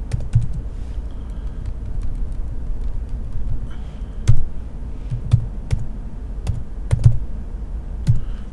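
Typing on a computer keyboard: irregular keystrokes, with a few sharper, louder key hits, over a low steady hum.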